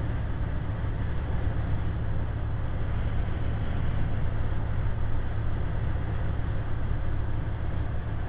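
Semi-truck cab at highway speed: a steady drone of the diesel engine, tyre and road noise, and wind, heard from inside the cab.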